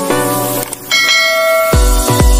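Intro music under subscribe-button sound effects: a short click, then a bright bell chime. A heavy, regular bass beat starts near the end.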